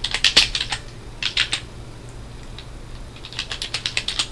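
Computer keyboard typing: quick runs of keystroke clicks in three bursts, one at the start, a short one about a second in, and another in the last second, with pauses between.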